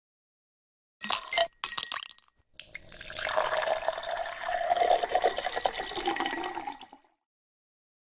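A few clinks of ice dropped into a glass, then a drink poured into the glass for about four seconds.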